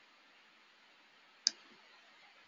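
A single sharp click of a computer's pointing-device button, choosing Paste from a right-click menu, against faint room tone.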